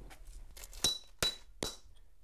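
Three sharp strikes of a hammer on a steel center punch, about half a second apart, each with a short metallic ring; the punch is driving a steel form tie deeper into a concrete foundation wall. The last strike is the softest.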